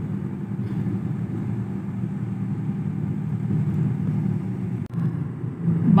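A car driving, heard as a steady low rumble of engine and road noise, with a brief dip about five seconds in.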